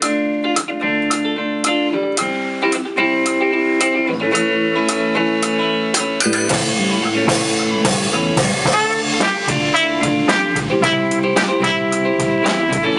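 A rock band playing, led by electric guitar over a drum kit with a steady beat. It starts abruptly after a moment of quiet and grows fuller from about six seconds in.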